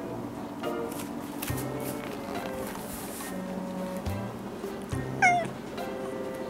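A cat gives one short meow about five seconds in, over gentle background music.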